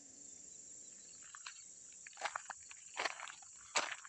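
Footsteps crunching on gravel, about four paced steps starting a little over a second in, over a steady high chirring of insects such as crickets.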